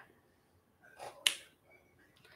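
A single short, sharp click about a second and a quarter in, just after a faint softer sound; otherwise quiet.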